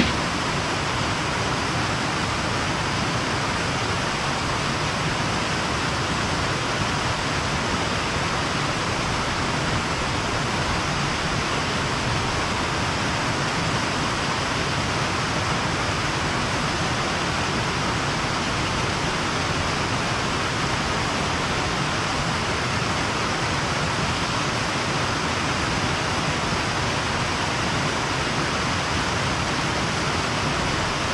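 A small waterfall pouring into a rocky pool: a steady rush of falling water that holds the same level throughout, with a short click right at the start.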